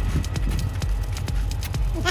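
Clip-clop hoofbeat sound effect: quick, even knocks, about four a second, over a repeating low thump.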